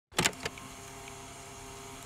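Cardboard boxes of colored pencils tossed onto a wooden workbench: a few quick knocks right at the start, followed by a steady low hum.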